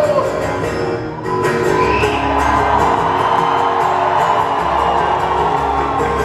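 Acoustic guitar strumming live while a concert crowd cheers and whoops, the crowd noise swelling up after a short dip about a second in.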